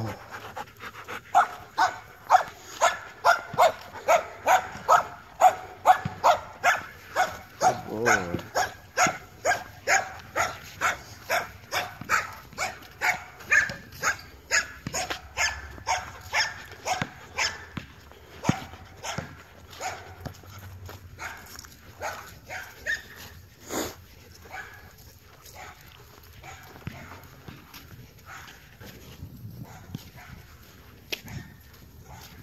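Siberian husky panting close by, about two quick breaths a second, growing fainter in the second half.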